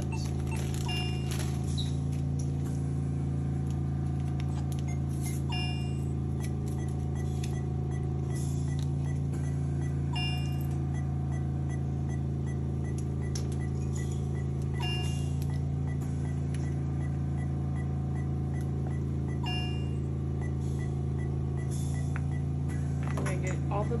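Steady low machine hum with a faint quick series of high beeps, and occasional short plastic clicks and rustles as a drip set is fitted to an IV fluid bag and its line primed.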